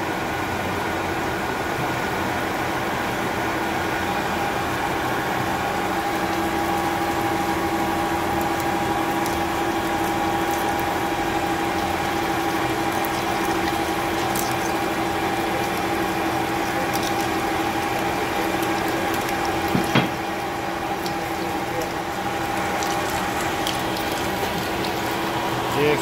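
HMT L22TP turret lathe drilling: the spindle turns the chucked workpiece while a twist drill in the turret feeds in under a flood of splashing coolant. The machine runs at a steady level throughout, and a steady whine from the cut sets in about six seconds in and holds until near the end. A single knock comes about twenty seconds in.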